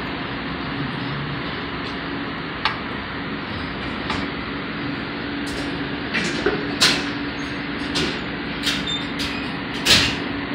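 Steady background hiss with a low hum, with a few sharp clicks and knocks, most of them in the second half, from the sliding poise weights and beam of a balance-beam scale being adjusted.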